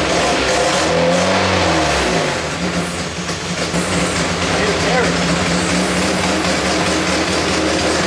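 Nissan 240SX engine running with its hood open, revs rising and falling once about a second in, then settling to a steady idle. The engine is idling to bleed its cooling system, and the owner suspects a remaining vacuum leak.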